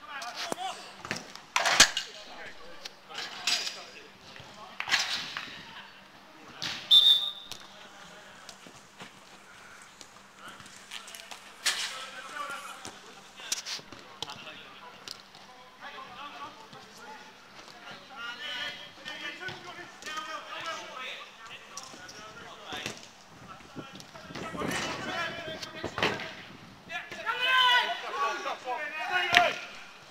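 A football being kicked on a five-a-side pitch: sharp thuds every second or two in the first part, the loudest near the start, with players shouting calls to each other later on.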